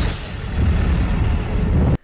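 Outdoor traffic noise from trucks: a steady engine rumble with hiss above it, cutting off suddenly at the end.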